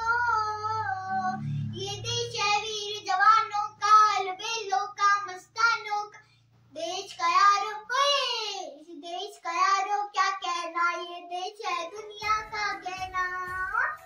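A young girl singing a song unaccompanied, in sustained phrases with a short pause about six seconds in.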